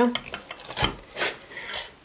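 Wooden spoon scraping and knocking against a stainless steel pot as a thick, stretchy cheese halva is worked, three strokes in the second half.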